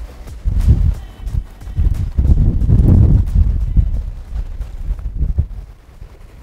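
Wind buffeting the microphone in a low, gusty rumble that is heaviest in the middle, with a few irregular knocks from choppy water slapping the boat's hull.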